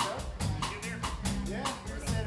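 Live rock band jamming an instrumental: a drum kit keeps a steady beat with cymbal hits about four a second, while electric guitar plays sliding lead notes over the bass.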